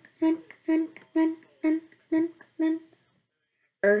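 A boy's voice, close to the microphone, hums or chants the same short note about seven times, roughly twice a second, then stops. Near the end he speaks a single word.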